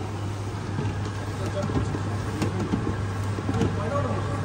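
Steady low hum of food-stall kitchen equipment and ventilation, with people chattering in the background and a few light clicks of utensils.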